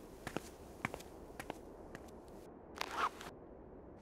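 Quiet cartoon sound effects: a few soft, scattered ticks and a short rustle about three seconds in.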